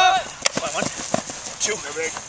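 Players' voices on an ultimate frisbee field: a repeated shouted call ends right at the start, followed by scattered faint voices and a few sharp knocks, the sharpest about half a second in.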